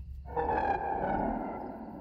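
An eerie sustained tone from a horror film's soundtrack swells in about a third of a second in, then slowly fades.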